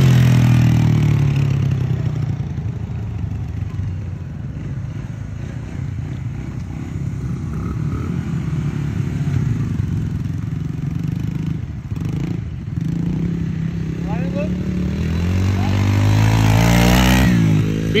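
Small youth dirt bike engine running as the bike rides past: loud as it goes by close at the start, fading as it moves off, then building again and loudest shortly before the end as it comes back past.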